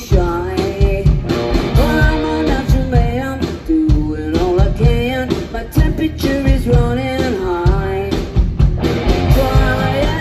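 Live rock band playing: a woman singing over electric guitars and a drum kit.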